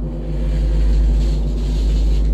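Loud, steady low rumble with a droning hum over it and a hiss that swells about a second in.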